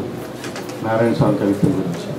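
A man's voice speaking into a microphone in a small room, in short broken phrases with pauses.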